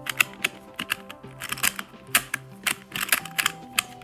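Plastic pieces of a novelty Pyraminx clacking and clicking in a rapid, irregular series as its layers are turned. It is a stiff puzzle that turns badly. Background music plays underneath.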